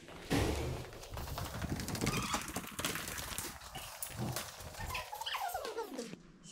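Footsteps going down a hard staircase with handling noise, mixed with a few short squeaks and a falling squeak near the end.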